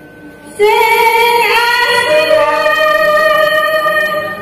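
Javanese traditional music for a jaran kepang performance. A female singer enters about half a second in with long held notes and steps up in pitch twice.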